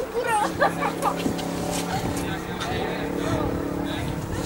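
Players' shouts and calls on an outdoor football pitch, most of them in the first second, over a steady engine hum from a vehicle that holds from about half a second in until near the end.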